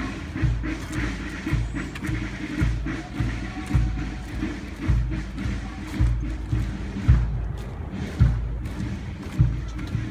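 Military marching band playing a march, its bass drum beating a steady marching time of about two beats a second.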